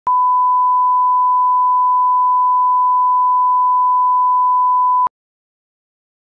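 Broadcast 1 kHz line-up test tone played with colour bars: a single steady, loud pitch that cuts off suddenly about five seconds in.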